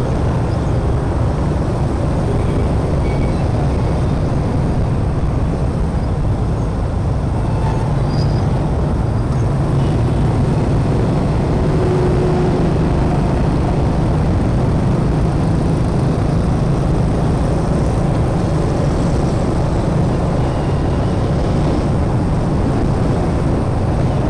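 Motorbike riding noise in dense scooter traffic: a steady low rumble of engines and road noise that does not let up.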